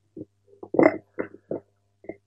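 Microphone handling noise: a handful of short, dull bumps and rubs as the gooseneck podium microphone is gripped and adjusted. The loudest comes just under a second in, over a faint steady low hum from the sound system.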